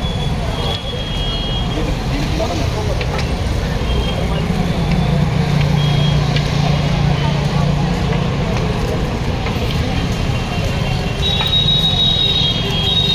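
Busy street sound during a foot march: steady traffic and vehicle engine noise, with background voices. A low engine hum swells in the middle, and short high-pitched beeps sound near the start and again near the end.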